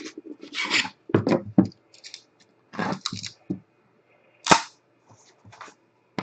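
Hands handling and opening a cardboard trading-card hobby box, its board and packaging rubbing and scraping in short, irregular bursts. One sharper knock about four and a half seconds in is the loudest sound.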